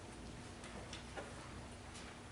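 Faint, scattered clicks and ticks of choir folders and pages being handled, over a low steady hum.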